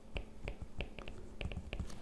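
Stylus tapping and scratching on a tablet screen while writing by hand: faint, irregular clicks, several a second.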